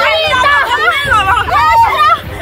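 Several girls' and young women's voices yelling and screaming over one another, high-pitched and without a break, during a scuffle.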